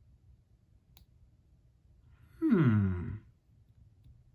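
A man's short wordless vocal sound, falling steeply in pitch, a little past halfway. Around it is low room quiet, with one faint click about a second in.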